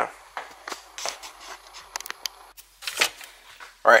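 Scattered light clicks, taps and rustles of handling, with a faint steady low hum underneath.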